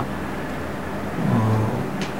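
Steady background rumble, with a brief low voice sound about a second and a half in.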